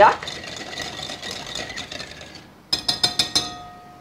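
Wire whisk stirring a thin milk, oil and sugar mixture in a glass mixing bowl, then tapped rapidly against the bowl's rim about three seconds in, a quick run of clicks that leaves the glass ringing.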